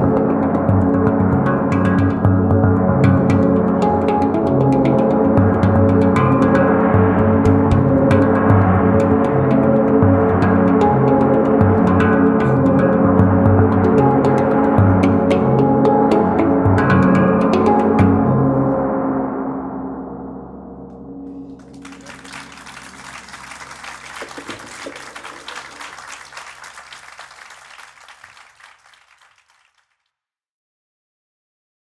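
Live instrumental music: a handpan struck by hand, with ringing gong-like metal tones and a pulsing low bass. It fades out a little past halfway and rings away, followed by several seconds of applause that dies out just before the end.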